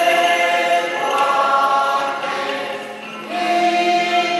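A choir singing a hymn without accompaniment, in long held notes. The singing dips briefly about three seconds in, then a new note starts.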